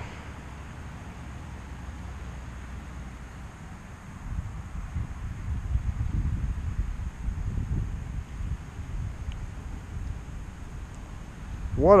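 Wind rumbling and buffeting against the microphone, gusting louder for several seconds from about four seconds in; a man's voice starts right at the end.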